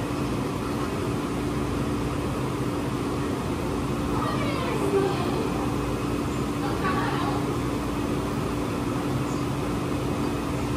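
Steady machine hum with an even background noise, and faint voices now and then.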